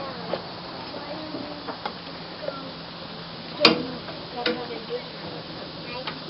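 Faint voices in the background, broken by several short, sharp knocks. The loudest knock comes about three and a half seconds in, and a smaller one follows about a second later.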